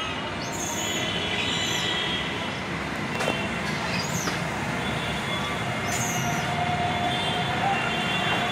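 Steady outdoor background noise with a few short, high-pitched chirps: one about half a second in, others around a second and a half, four and six seconds in.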